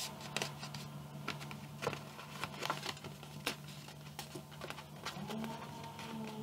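Sheet of card being folded and creased by hand: scattered light crackles and taps of paper handling, over a low steady hum. A faint steady tone comes in near the end.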